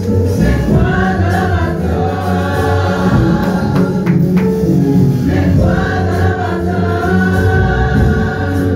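Gospel worship song: a choir singing over a steady instrumental backing, with light percussion.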